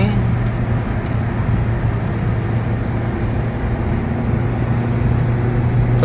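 Steady cabin noise of a car cruising on a toll road, heard from inside: a low, even drone of engine and tyres on the road.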